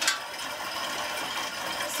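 Spinning bike's flywheel and drive running steadily as it is pedalled, with a single click at the very start.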